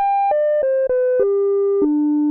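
Korg Prologue's analog filter self-oscillating at full resonance with key tracking at 100%, played as its own oscillator: a near-pure tone stepping down through a run of about six notes, each short except a longer fifth one.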